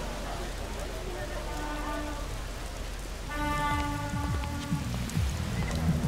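Steady rain falling on wet pavement, with music entering over it: held chord tones twice, and a low pulsing beat from about halfway in.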